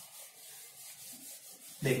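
A duster rubbing across a whiteboard in quick back-and-forth strokes, wiping off marker writing. The sound is faint and scratchy.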